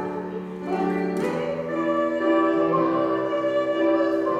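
A woman sings solo with grand piano accompaniment. A new phrase starts about a second in, and she holds one long note through the second half.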